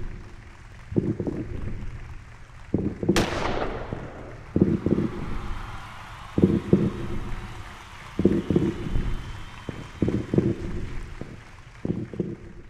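A starter's pistol fires once about three seconds in, and stadium crowd cheering swells up after it. A deep thud repeats roughly every two seconds throughout.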